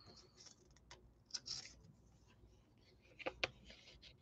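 Faint handling sounds of packing a coin into an envelope: a soft rustle about a second and a half in, then two small clicks near the end.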